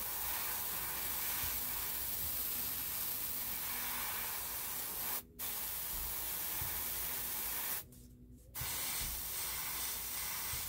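Airbrush spraying paint: a steady hiss of air and paint that cuts off briefly a little after five seconds and again for about half a second near eight seconds as the trigger is let go.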